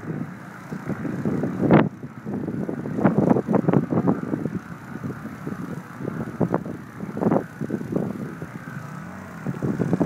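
Footsteps and shuffling on dry grass and pine needles: irregular crunching and rustling, with a sharper click about two seconds in.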